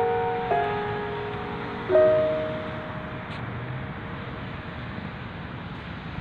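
Slow, soft piano background music: a few held notes in the first two seconds that fade away, leaving a pause with only a faint hiss.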